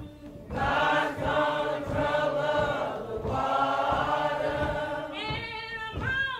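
A choir singing long held chords. About five seconds in, a single voice enters with a sliding, wavering melody line.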